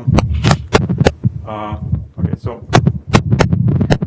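A man's voice in a lecture room, broken by many sharp clicks and low thumps, over a steady low hum.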